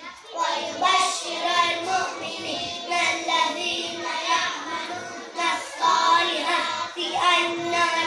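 A group of young children chanting together in unison, in short melodic phrases that restart every second or so.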